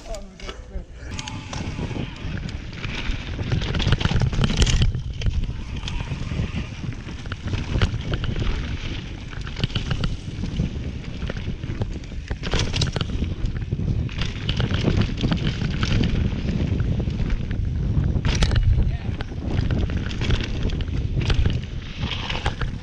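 Wind buffeting the microphone while a mountain bike runs fast down a dirt trail, its tyres rumbling over the ground and the bike rattling. Three sharp clattering knocks come through the run.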